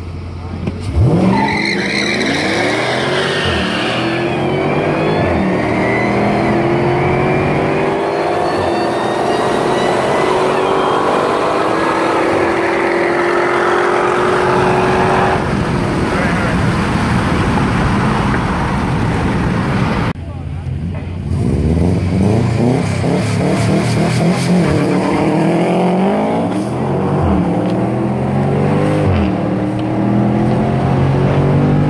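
Cars accelerating hard in a street race, engines revving up through the gears: the pitch climbs, dips at each shift and climbs again. One of them is a second-generation Cadillac CTS-V with its supercharged V8. The sound cuts off abruptly about two-thirds of the way through and picks up again with another run of engine revving.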